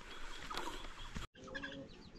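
Faint chickens clucking and small birds chirping in the background, with a brief gap in the sound just after a second in.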